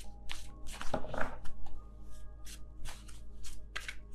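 A deck of tarot cards being shuffled by hand: an irregular run of sharp card clicks and slaps, over soft background music with long held notes.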